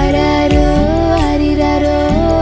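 Music from a Tamil children's nursery rhyme: a gliding melody line over a steady beat.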